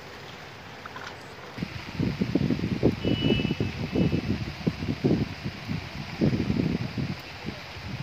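Steady hiss of rain over a flooded rice paddy; from about a second and a half in, irregular gusts of wind buffet the microphone with low rumbles.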